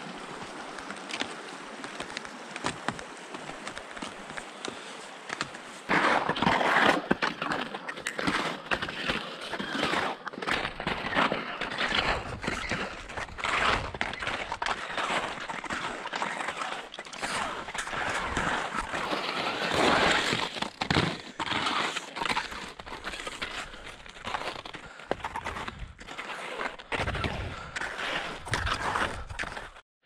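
A steady rushing noise with a few knocks for about six seconds, then louder, irregular crunching and scraping of footsteps on snow.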